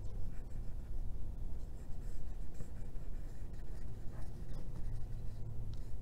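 Nozzle of a white school-glue squeeze bottle scraping lightly along construction paper as a line of glue is laid down, making faint, scattered scratching sounds over a steady low hum.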